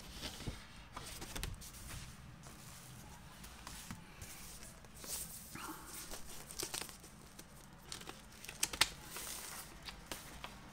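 Rustling of paper inner sleeves and cardboard as vinyl LPs are slid out and handled, with scattered light taps and clicks; a short cluster of sharper clicks near the end.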